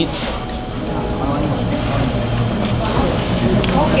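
Indistinct chatter of other diners' voices in a restaurant, over a steady low hum.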